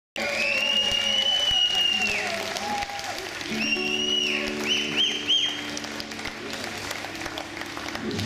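Crowd applause with loud, shrill whistles: one long whistle at the start, another near the middle, then two short rising whistles. From about three and a half seconds in, the band holds a steady sustained chord under the applause.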